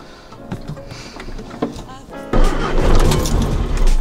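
Background music, then about two thirds of the way in a sudden jump to loud cabin noise inside a moving Morris Minor 1000: the four-cylinder engine running and the tyres rumbling on the road.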